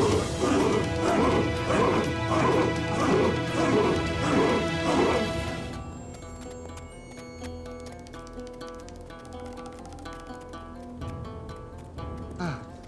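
A group of men shouting a rhythmic war chant, about two cries a second, over dramatic score music. About six seconds in the chanting cuts off abruptly and quieter music of held tones carries on.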